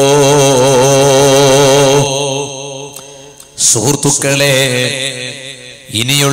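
A man's voice chanting a long, drawn-out melodic line through a public-address microphone, its pitch wavering, breaking off about two seconds in. A short loud sound follows about halfway through, then quieter chanting.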